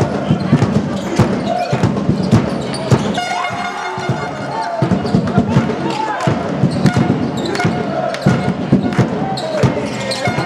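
Basketball being dribbled on a sports-hall floor, bouncing repeatedly, with sneakers squeaking on the court and players' voices in the hall's echo.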